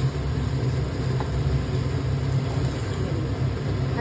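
A steady low hum, like a running motor or fan, with faint scraping of a slotted spatula stirring potato filling in a pan.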